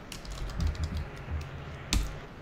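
Typing on a computer keyboard: a run of quick key clicks, with one louder keystroke near the end.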